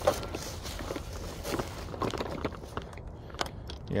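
Footsteps and rustling in dry fallen leaves, irregular and soft, with a sharper knock right at the start and a few small clicks near the end.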